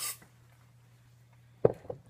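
Aerosol cooking spray can giving one short hiss, about a fifth of a second long, as it is sprayed into the mouth. Near the end come two short, loud sounds, the first the louder.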